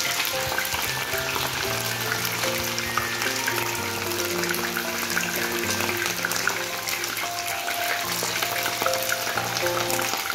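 Mullet pieces frying in shallow cooking oil in a pan: a steady crackling sizzle. Background music with a simple melody plays over it throughout.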